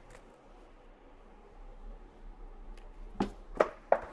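Low room tone, then a few faint knocks and clicks in the second half as body armor plates are lifted off a clay backing block and set down on a metal table.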